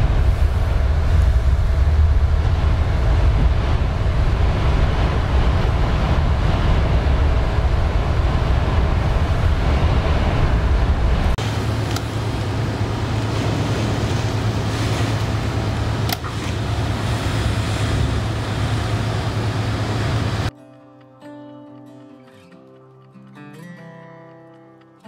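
Typhoon wind and rain against unshuttered sliding glass doors: a loud, steady rush with heavy low buffeting, the doors shaking and whistling in the gusts. About 20 seconds in it cuts suddenly to quiet guitar music.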